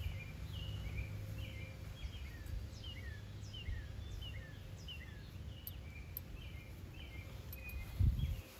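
Small birds chirping steadily, a stream of short falling notes two or three a second, over a low rumble on the microphone.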